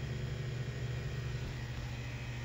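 Steady low hum with an even hiss: background room noise, with no distinct events.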